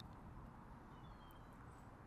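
Near silence: a faint outdoor background, with a few faint, short, high chirps a little after a second in.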